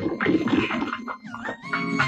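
Film soundtrack music with a few steady held high tones over a busy, noisy action mix.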